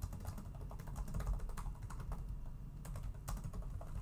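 Typing on a computer keyboard: a quick run of key clicks, thinning out briefly past the middle before picking up again.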